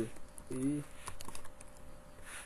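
Computer keyboard typing: a quick run of light keystrokes, mostly in the second half.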